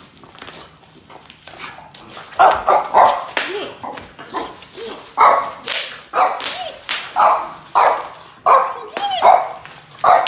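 Dog barking in a run of short, sharp barks, one every half second to second, starting about two seconds in.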